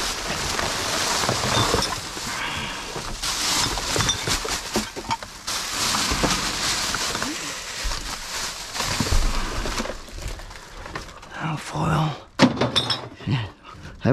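Plastic rubbish bags, wrappers and foil rustling and crinkling as gloved hands dig through a dumpster full of rubbish, with one sharp knock near the end.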